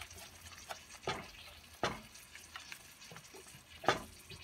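Wooden spatula stirring ground coconut paste into curry gravy in a stainless steel pot, with a few short scrapes and knocks of the spatula against the pot.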